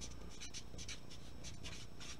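Felt-tip marker writing on paper: a quick series of short, faint strokes.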